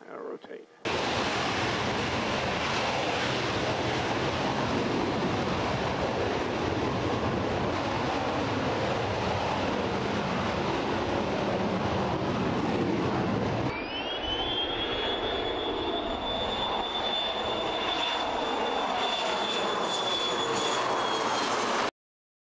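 NASA Shuttle Training Aircraft, a modified Gulfstream II jet with twin Rolls-Royce Spey turbofans, taking off. A loud steady jet roar starts about a second in, breaks off sharply about two-thirds of the way through, and is followed by a high turbine whine that rises and then holds over the roar as the jet climbs away.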